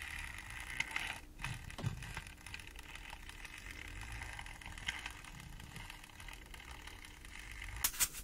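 Plastic and rubber objects handled and rubbed close to a microphone: faint soft rustling with many small clicks, and one sharper click near the end.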